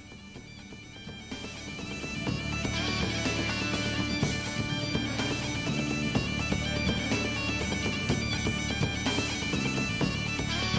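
Bagpipe music with a steady drone under the melody, fading in over the first two seconds or so.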